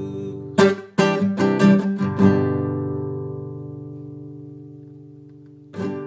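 Nylon-string classical guitar playing the final bars of a song: a few plucked notes and strums in the first two seconds, then a last chord left ringing and slowly dying away. A couple more notes are plucked just before the end.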